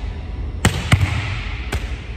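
A volleyball slapped with an open hand, rebounding off the gym wall and caught: three sharp smacks within about a second, echoing in the gym.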